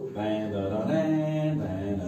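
A man's voice chanting long, held notes that step in pitch from one note to the next.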